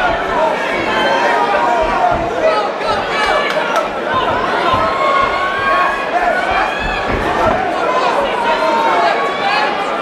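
Fight crowd shouting and cheering, many voices overlapping at a steady, loud level.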